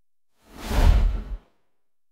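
A whoosh sound effect in the track: a noisy swell with heavy bass that starts about half a second in, builds, and cuts off sharply about a second later, with silence on either side.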